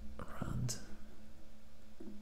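A man muttering under his breath, a short whispered phrase about half a second in, over a steady low hum.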